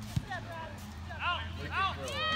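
A soccer ball kicked once, a single sharp thud just after the start, followed by two short high-pitched shouts from players on the field over a steady low hum.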